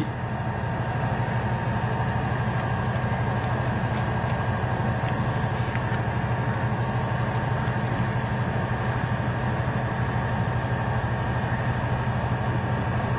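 Steady low mechanical hum with a few faint, thin high tones over it, unchanging throughout.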